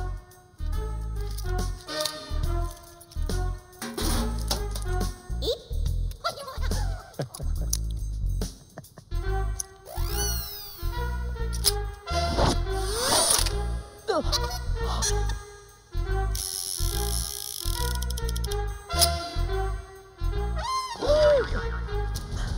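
Playful comic film background score with a regular bass beat under a bouncy melody, with sliding notes about halfway through.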